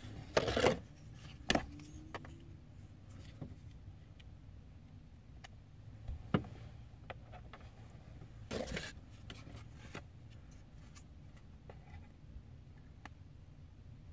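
Handling of a two-part epoxy syringe and its cardboard-and-plastic package: scattered rustles and clicks, a few of them louder, over a low steady hum.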